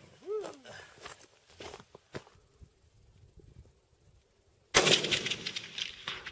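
A single rifle shot about three-quarters of the way through, sudden and loud, its report trailing away over about a second and a half.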